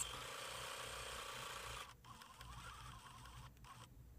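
Electric sewing machine running steadily, stitching a quarter-inch seam through fabric, then stopping about two seconds in.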